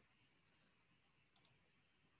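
Near silence, broken by a quick double click of a computer mouse about one and a half seconds in.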